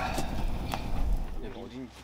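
Firewood burning in an open metal fire pit, crackling with sharp pops and snaps over a low rumble of flame; the crackling thins and grows quieter about halfway through.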